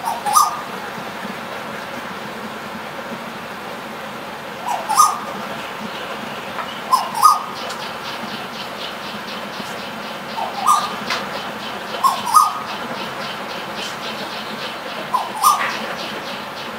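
A bird calling: six short double-note calls, each pair rising quickly, spaced a few seconds apart over a steady background hiss. A faint, fast, high ticking joins from about halfway.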